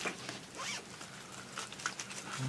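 Paper script sheets rustling and crinkling as they are handled and turned, in several brief scratchy rustles.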